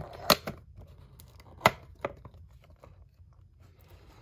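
Thin cardboard toy box being opened by hand: the end flap is pulled free with two sharp snaps about a second and a half apart, followed by lighter ticks and rustles of cardboard being handled.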